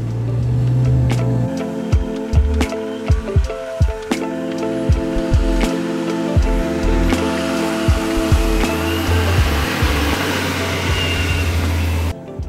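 Background music: sustained chords over held bass notes, punctuated by percussion hits, with a hissing swell that builds in the second half and cuts off suddenly at the end.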